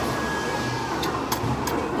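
Restaurant room noise with a steady low hum, as udon noodles are slurped at the table, with a few light clicks in the second half.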